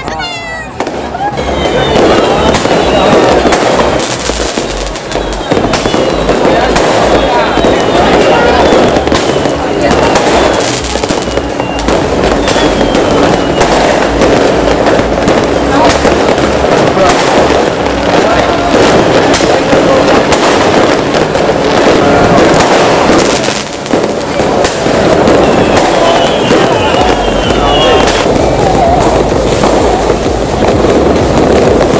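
A dense, continuous barrage of fireworks: rapid overlapping bangs and crackles of aerial shells and firecrackers. It is quieter for the first second or two, then loud and unbroken.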